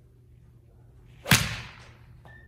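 A 7-iron striking a golf ball off a hitting mat: one sharp, loud crack about a second and a quarter in, with a short decaying tail after it.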